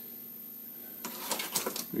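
A bundle of paint mixing sticks clattering as they are picked up from the workbench: a quick run of light clicks and rattles in the second half.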